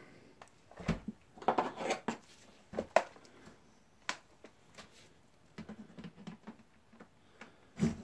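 Scattered clicks and knocks of a plastic computer keyboard case being handled and prodded with a flat prying tool, with a brief rustle of handling about one and a half seconds in.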